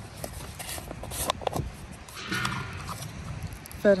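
A small plastic finds pot being handled and its lid taken off: a scatter of light clicks and knocks, mostly in the first half.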